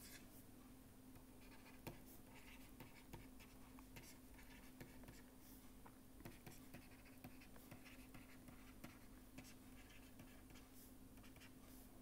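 Faint scratching and light ticks of a stylus writing on a pen tablet, over a steady low hum.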